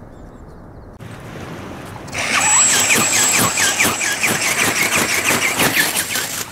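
Electric flapping drive of a large robotic dragon ornithopter: a high, steady motor whine with a squealing, rhythmic beat from the gear-driven wings, several beats a second. It turns loud about two seconds in, as the ornithopter comes close.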